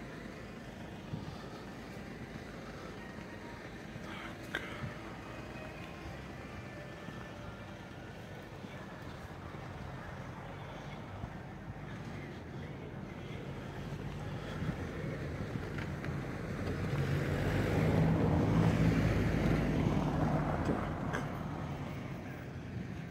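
Faint outdoor traffic ambience, then a motor vehicle driving past close by: its engine hum and tyre noise build up, are loudest about eighteen seconds in, and fade away just before the end.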